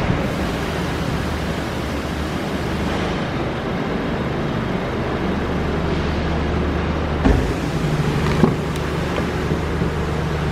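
A steady low hum over constant background noise, with two short knocks, the first a little past seven seconds in and the second at about eight and a half.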